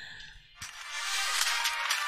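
Film soundtrack music coming in about half a second in and growing louder.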